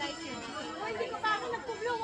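Several people chattering at once, overlapping voices with no single clear speaker.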